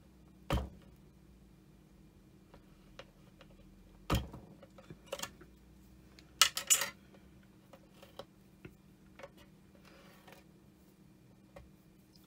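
A handled clay blade pressing down through a sheet of polymer clay onto a plastic cutting mat and being set down: a few separate sharp clicks and knocks, with a louder cluster of knocks about six and a half seconds in and light ticks between.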